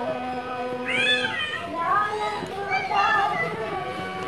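Young children's voices cheering and shouting excitedly as a celebration sound effect, several high voices swooping up and down, over steady background music.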